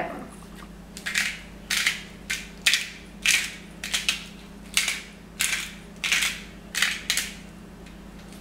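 Pre-filled, ready-to-grind black pepper mill twisted by hand, grinding peppercorns in about a dozen short grinding bursts, roughly two a second, that stop about a second before the end.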